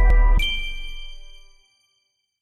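Closing TV channel ident jingle: a last chime-like note is struck about half a second in over a deep bass tone, and the chord rings out and dies away within about a second.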